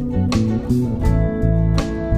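Instrumental background music led by guitar, with held chords over a moving bass line and two sharp accents about a second and a half apart.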